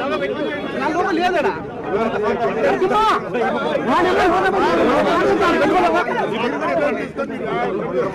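A crowd of men talking over one another: several voices at once, loud and continuous.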